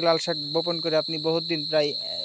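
A steady, unbroken high-pitched insect drone of crickets running under a man's speech.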